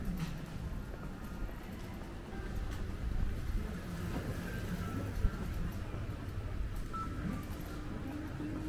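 Street ambience of a narrow shopping street: a low hum of the town with faint music, distant voices and footsteps on the paving. There is one sharp knock about five seconds in.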